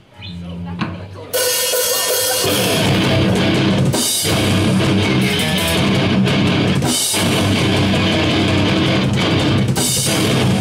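Hardcore band playing live with distorted electric guitars, bass and drum kit. After a brief break a quieter held note sounds for about a second, then the full band comes in loud, with short stops about four and seven seconds in.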